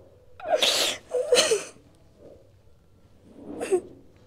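A woman sobbing: two loud, breathy sobs in quick succession starting about half a second in, then a shorter sob near the end.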